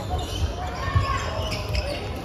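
Badminton doubles rally in a large echoing sports hall: sharp racket hits on the shuttlecock and thudding footfalls on the court floor, the loudest hit about a second in, over a background of voices.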